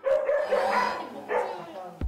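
A dog barking aggressively in two bursts, a long one and a short one, as it lunges at a person right after eating a treat: the kind of outburst its owners say comes mostly when food is around.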